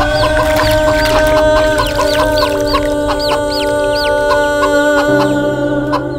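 A hen clucking and her chicks peeping in many short, high calls, over a held chord of film music; a low bass note joins about five seconds in.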